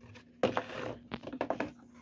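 Plastic blister-card toy packaging handled in the hand: an irregular scatter of light clicks, taps and rustles.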